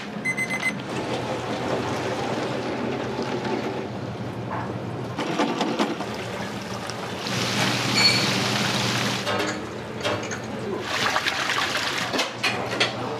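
Udon kitchen sounds: a short electronic timer beep right at the start over a steady machine hum, then water splashing and running as noodles go into a boiling noodle cooker and are rinsed under the tap, the water loudest about eight seconds in.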